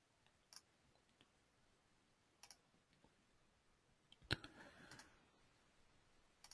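Computer mouse clicks: a few faint, sparse clicks over near silence, with one louder click about four seconds in, followed by a couple of softer ones.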